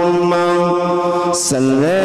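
A man chanting into a microphone in long, steady held notes. About one and a half seconds in, after a brief hissed 's' sound, his voice glides upward to a new held note.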